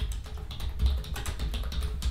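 Typing on a computer keyboard: a quick, uneven run of key clicks as a short phrase is typed.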